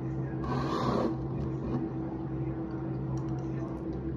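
A steady low hum runs throughout, with a brief rustle about half a second in.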